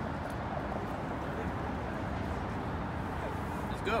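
Steady outdoor background noise, strongest as a low rumble, with faint voices in it; a single spoken "good" comes at the very end.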